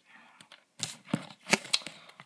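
Hands handling paper and card: a soft rustle, then a few sharp clicks and rustles about a second in, as a small card is picked up and brought forward.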